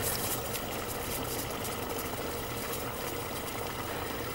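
Liquid nitrogen boiling steadily around a warm carnation dipped into it, a continuous bubbling hiss. The flower is still being chilled down towards the nitrogen's temperature.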